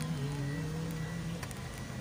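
Background music: slow held melody notes that step between pitches and fade out partway through, over a steady rumble of noise.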